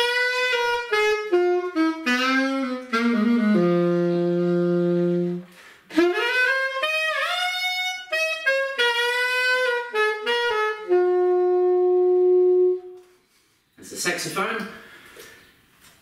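Alto saxophone playing two short melodic phrases, each ending on a held note: a long low note about four seconds in, and a higher held note near the end. A man's voice is heard briefly after the playing stops.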